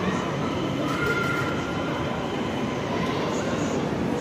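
Steady crowd hubbub and machine rumble of a busy shopping-mall atrium, echoing in the large open space, with no single sound standing out.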